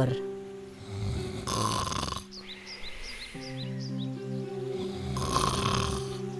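Cartoon snoring sound effect for a sleeping wolf: two long snores, one about a second in and one near the end, over soft background music.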